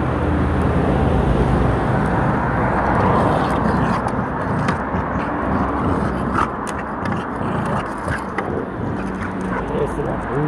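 A dog worrying a dry wooden stick on paving, with scattered clicks and scrapes in the second half, over a steady outdoor rumble.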